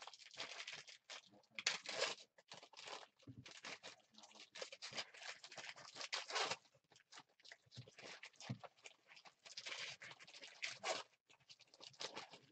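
Foil trading-card pack wrappers crinkling and being torn open, with the cards inside handled, in faint irregular rustles.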